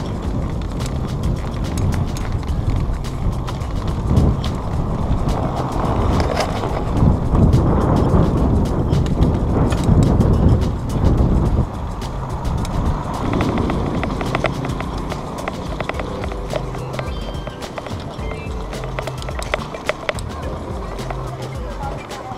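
Mountain bike rattling over cobblestones, with dense irregular clicks and wind rushing on the camera's microphone, loudest for a few seconds in the middle. Background music with a bass line plays underneath.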